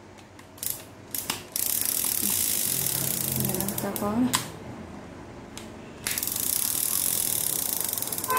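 Shimano Triton conventional sea reel being cranked by hand: a few sharp clicks, then two spells of steady dry whirring from its gears and spool, the second starting about six seconds in. The reel turns freely, which the seller calls very light.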